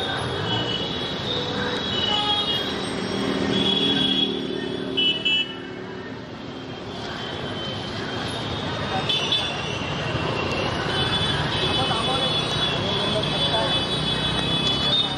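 Motor-scooter traffic and crowd voices in a moving street procession, with horns tooting over them: two short loud toots about five seconds in, and long held horn notes in the second half.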